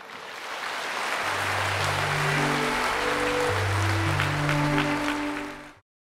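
Large audience applauding in a hall, with slow music of sustained chords coming in about a second in. The sound cuts off suddenly near the end.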